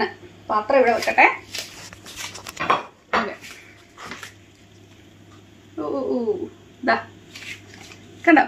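A woman's voice in a few short utterances, with brief handling noises and soft clicks in between.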